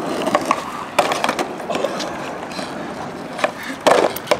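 Skateboard wheels rolling over smooth concrete, with scattered clicks and knocks from the board and a louder clack near the end.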